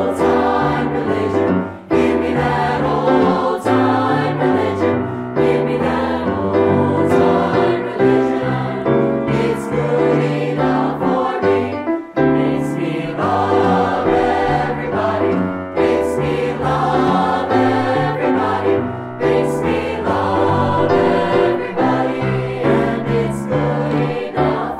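Mixed-voice choir singing a song in parts, accompanied by piano.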